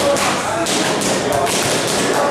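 Boxing-gym impacts: gloved punches landing on pads and bags, a run of irregular sharp slaps and knocks.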